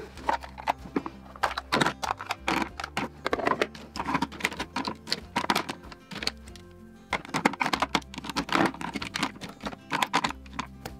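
Plastic lip gloss and lipstick tubes clicking and clattering as they are set one by one into a clear acrylic organiser drawer, in quick irregular taps with a short lull in the middle, over background music.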